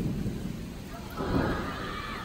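Thunder rumbling in a heavy rainstorm: a low rumble dying away at the start, then swelling again briefly just past the middle, with rain under it.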